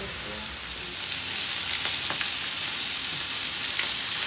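Chicken pieces and sliced onion sizzling in hot oil in a wok, a steady hiss with a few faint clicks of a spatula against the pan.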